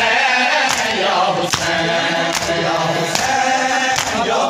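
A crowd of male mourners chanting a noha in chorus, with a unison matam beat of hands striking bare chests about every 0.8 seconds.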